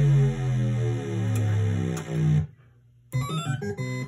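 Gottlieb Caveman pinball sound board playing test sound number six: an electronic tune of stepping notes that stops abruptly about two and a half seconds in. A brief rising sound follows near the end.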